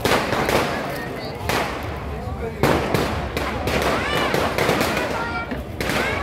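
Firecrackers going off in repeated loud bursts of crackling, with a crowd of voices shouting over them.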